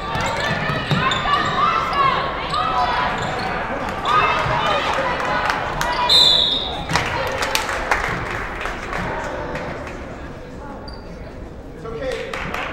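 Gym basketball play: a ball bouncing on the hardwood floor amid shouting players and spectators, with a short shrill referee's whistle blast a little after six seconds in. After the whistle play stops and the voices quieten.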